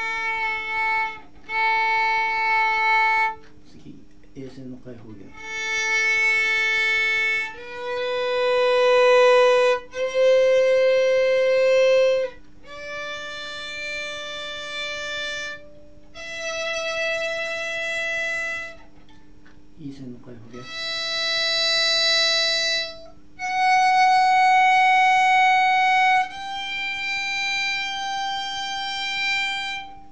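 Solo violin playing long, separate bowed notes that climb step by step through the G major scale in first position, from A up to the high G on the E string. Each note is held a second or two with short breaks between, as in slow intonation practice, each pitch checked against a tuner. A brief low rumbling noise falls between notes about four seconds in and again near twenty seconds.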